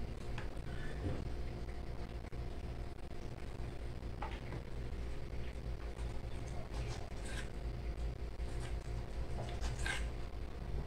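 A steady low hum with a few faint, short clicks and knocks: a kitchen knife cutting soft dough and touching the marble counter.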